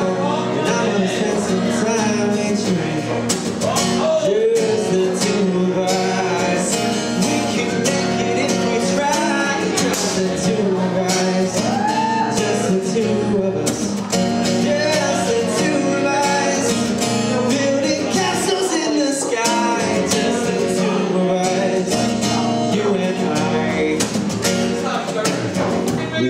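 Acoustic guitar strummed steadily, with a man singing over it into a microphone.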